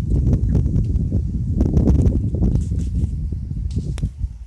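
Wind buffeting and handling noise on a handheld phone microphone: a loud, uneven low rumble with many small irregular crackles and knocks.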